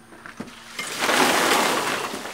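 A bucket of ice water dumped over a seated man's head, pouring and splashing onto him and a wooden deck. The rush of water starts about a second in, after a short knock.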